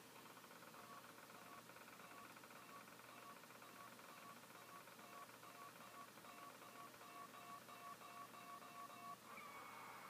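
Faint electronic jingle from an online random name picker running on a computer, short notes repeating a few times a second while the letters spin, heard through the computer's speakers. The pattern stops about nine seconds in and gives way to a single held tone as the name lands.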